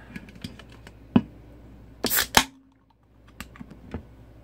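A 24 oz aluminium beer can being cracked open: small clicks of fingers on the pull-tab, a sharp click about a second in, then a short hiss of escaping gas ending in a snap about two seconds in as the tab opens.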